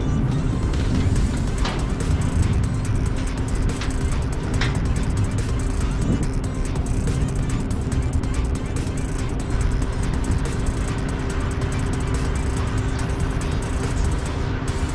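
Truck cab noise on the move: a steady low rumble with a constant droning hum that does not change pitch.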